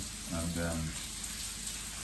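A short mumbled word from a man, then a steady background hiss.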